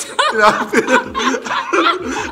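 A man and a woman laughing together.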